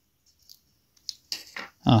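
A few faint clicks from a thin metal pick working along the plastic seam of an earbud shell. About a second and a half in comes a short grunt, and speech begins near the end.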